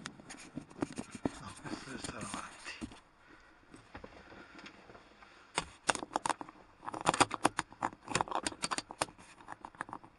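Fingers handling a 360° camera right at its microphone. A quick, irregular run of clicks, taps and scrapes starts about five and a half seconds in and goes on to near the end.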